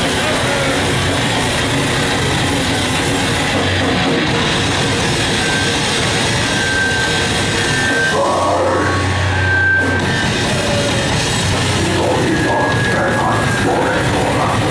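Heavy metal band playing live on electric guitar and drum kit, dense and loud, with a deeper low note standing out for a couple of seconds about eight seconds in.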